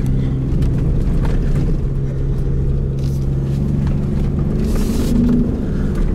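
2018 Ford Raptor's twin-turbo EcoBoost V6 heard from inside the cab, running hard at a steady note that steps up in pitch near the end as the truck is driven through a slide on the dirt. Short bursts of hiss come in about three seconds in and again about five seconds in.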